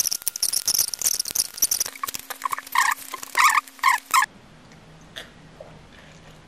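Fast-forwarded talk and eating noises: a squeaky, chipmunk-like chattering voice over rapid clicks, cutting off suddenly about four seconds in. After that there is quiet room tone with a faint low hum.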